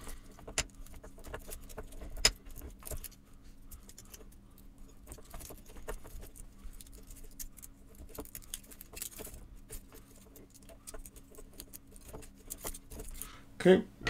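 Faint, scattered crinkling and small clicks of the foil shields being peeled off the twisted pairs of a shielded CAT7 ethernet cable, with one sharper click about two seconds in.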